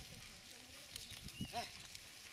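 Faint field sound of a yoked pair of oxen pulling a plough through grass, with one short call about one and a half seconds in.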